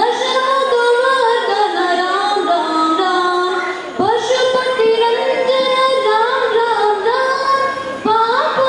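A boy singing solo into a handheld microphone in a high, unbroken voice, holding long notes with ornamented glides between pitches. He breaks for a brief breath about four seconds in, then carries on.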